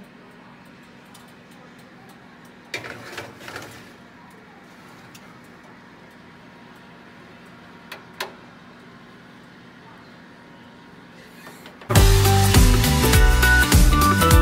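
A metal baking tray clattering as it is slid into an oven about three seconds in, and two sharp clicks a few seconds later, over a steady low hum. Loud background music comes in suddenly near the end.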